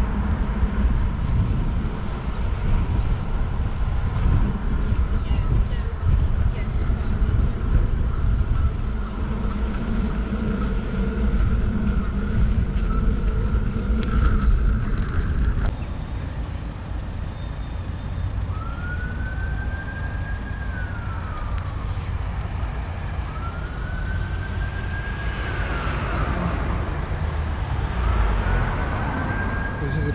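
Wind rumbling on the microphone of a moving bicycle throughout, and from about two-thirds of the way in an ambulance siren wailing in three slow rising-and-falling sweeps.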